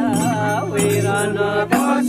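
Traditional Nepali folk song chanted by a group of men, with held low notes under a wavering sung melody, accompanied by madal hand drums. A sharp drum stroke comes near the end.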